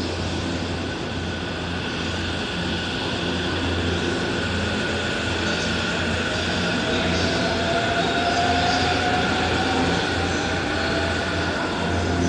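E257 series 5500 subseries electric train pulling out of the station and running past, with a low running hum and a thin motor whine that rises slowly in pitch from about halfway through as it picks up speed.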